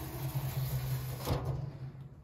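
Slatted roller shutter being lowered over a window: a steady rolling rumble with a low hum, and a knock a little over a second in.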